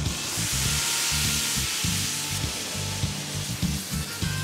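Food sizzling as it fries in a pan on a gas burner, a steady hiss that fades toward the end, over background music with a low, stop-start bass line.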